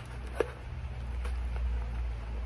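Paper-and-foil tobacco packet being pulled open by hand, crinkling faintly, with one sharp click about half a second in, over a steady low hum.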